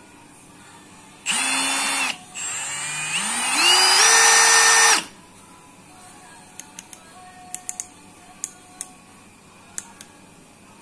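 Milwaukee M18 FUEL 2804-20 brushless hammer drill running free. A short burst at one steady speed comes about a second in, then after a brief pause the trigger is squeezed in stages so the motor whine climbs step by step to full speed, holds for about a second and cuts off suddenly. Light clicks follow in the second half as the collar is turned through its detents.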